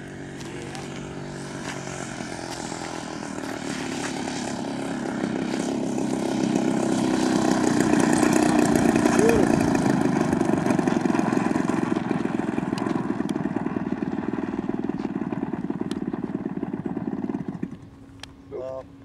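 The 111cc gasoline engine and propeller of a large radio-controlled Extra 300L aerobatic plane running on a landing approach and rollout, growing louder as the plane comes in and touches down, loudest about eight to ten seconds in. The sound falls away abruptly just before the end.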